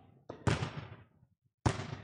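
A rubber playground ball in a rally, struck by hand and bouncing on a hardwood gym floor: two sharp smacks about a second apart, each ringing out in the gym's echo.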